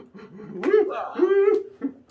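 A person's voice making two long drawn-out wordless sounds, straining with effort while pushing against a truck.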